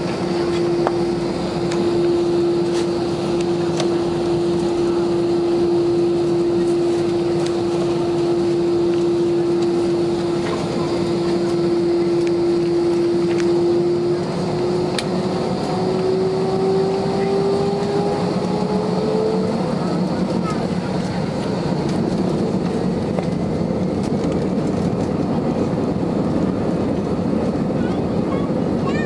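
Inside the cabin of an Airbus A320-214 taxiing for takeoff: a steady rush of cabin and engine noise with a single steady engine whine, which rises in pitch for several seconds past the middle and then fades out.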